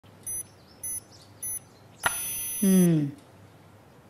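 Life-Line digital blood pressure monitor beeping: three short, evenly spaced high beeps, then one longer beep about two seconds in, with a brief falling vocal sound over its end.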